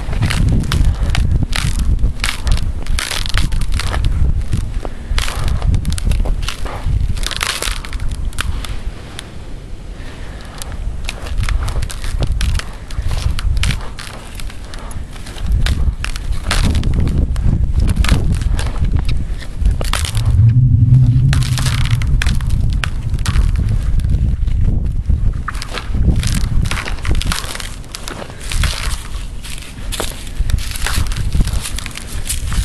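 Footsteps on a frozen pond's ice, with frequent sharp cracks and crackles under the boots. About two-thirds of the way through, a distant minigun fires one long, low, buzzing burst of about two seconds, heard over the steps.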